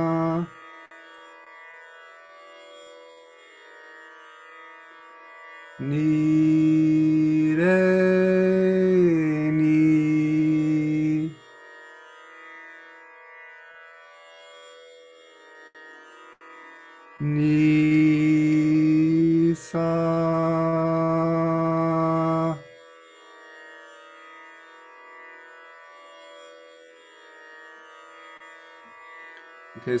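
A man sings long held tones (toning) over a quiet, steady drone. The first tone lasts about five seconds and steps up a note and back down. After a pause where only the drone is heard, a second tone of about five seconds holds one pitch.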